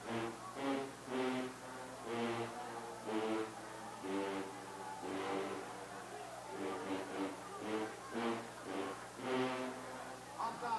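A brass band playing faintly, a tune of short, separate notes.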